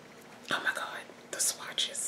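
A woman whispering under her breath in a few short, breathy bursts.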